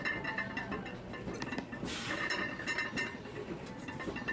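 Quiet electronic background music: a soft passage of sustained high notes with light ticking.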